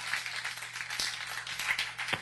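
A room of people clapping: many scattered hand claps in a dense run, over a steady low hum.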